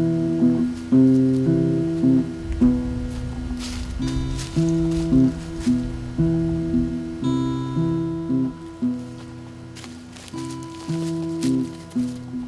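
Acoustic guitar music: plucked notes picked in a repeating figure, each note starting sharply and fading.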